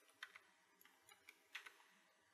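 Faint computer keyboard clicks: several light, separate taps over near silence.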